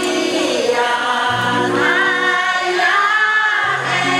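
A village choir singing a traditional Paiwan ballad in parts, on long held notes that shift together in pitch. A lower voice part comes in about a second in and again near the end.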